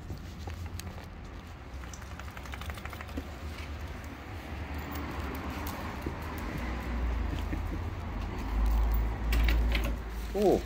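Small dogs' claws and feet pattering on tiled steps and paving, a run of light quick ticks, over a low rumble that swells near the end.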